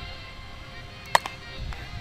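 A single sharp crack of a softball bat hitting the ball about a second in, ringing briefly, over faint background music.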